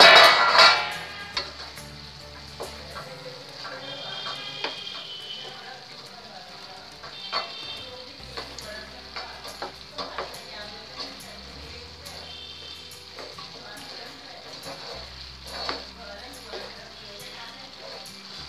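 Potato, cauliflower and peas sizzling in a frying pan while a spatula stirs them, scraping and knocking against the pan many times. A loud clatter in the first second, as the steel plate lid comes off the pan.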